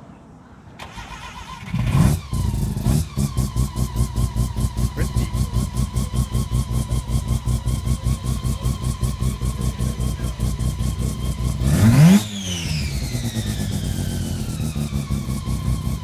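Bridgeported 13B rotary engine in a Mazda RX-3 coupe cranking and catching about two seconds in with a quick rev. It then settles into a choppy idle pulsing about four times a second, typical of a bridgeport. About twelve seconds in it is blipped once, rising sharply, and the revs fall back to the lumpy idle.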